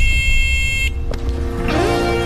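Car horn blaring in one long steady honk over a loud low engine rumble, cutting off about a second in while the rumble continues.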